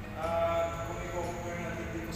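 A voice speaking, with drawn-out, wavering vowels that the recogniser did not catch as words.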